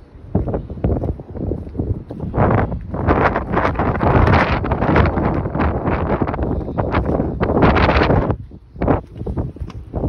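Wind buffeting a phone's microphone in irregular gusts, loudest through the middle, then easing off near the end with a few light clicks.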